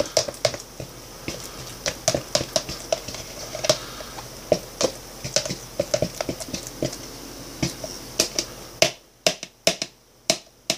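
Irregular clicks and light knocks of fingers and a metal spoon against a thin plastic cup as a thick banana-and-potato-flake mash is pressed down into it. A faint steady hiss in the background cuts off about nine seconds in.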